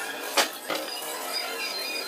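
A bowl set down on a wooden table: a sharp knock about half a second in and a lighter one soon after, over faint background music.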